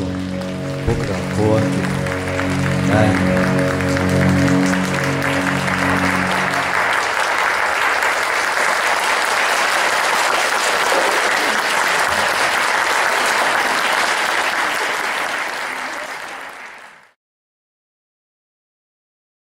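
Audience applauding over the percussion ensemble's final sustained chord. The chord dies away about seven seconds in, and the applause carries on alone until it fades out near the end.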